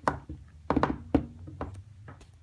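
Hands handling a retail box on a wooden table, its lid lifted off: a sharp knock at the start, a quick cluster of knocks just before a second in, the loudest single knock just after, and a lighter tap near the end.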